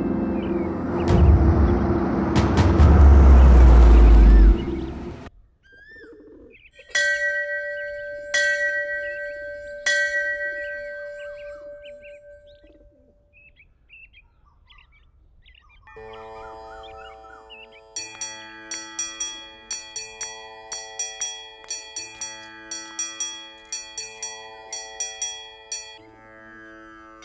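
Loud rumbling swell that cuts off suddenly about five seconds in. A temple bell is struck three times, each strike ringing out, with birds chirping. Then a held chord of music with quick ringing bell strikes, about two a second.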